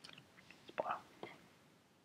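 A single faint computer mouse click as the save button is pressed, followed at once by a soft whispered sound of the voice, the loudest thing here.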